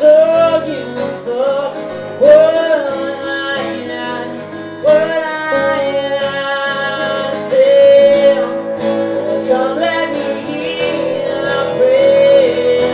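Two acoustic guitars strummed together under a male voice singing the melody in long held notes, each swooping up into pitch at its start.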